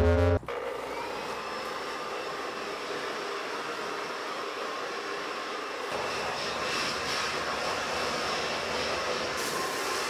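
Corded electric leaf blower running steadily, blowing sanding dust off a wooden tabletop. Its motor whine rises as it spins up near the start, and the sound gets fuller about six seconds in.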